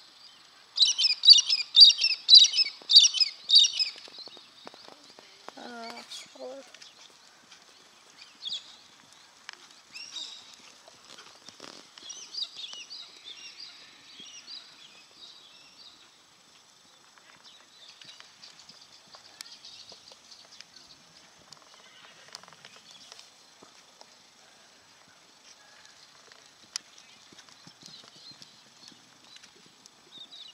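Loud bursts of rapid, high bird chirping for the first four seconds, with fainter bird chirping later on. A short call falling in pitch about six seconds in, and soft hoofbeats of a horse moving on an arena's sand surface.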